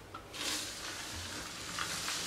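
Flat floor wiper with a dry disposable sheet swishing across wooden flooring, a steady hiss that picks up about half a second in as the sheet slides along the baseboard.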